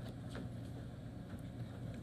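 Faint steady low hum over a light background hiss, with a few soft ticks: background noise in a gap between words.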